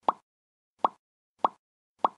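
Pop sound effects from an animated end card, one short pop as each social-media icon appears. There are three pops, each about 0.6 to 0.75 s after the last, and a fourth right at the end.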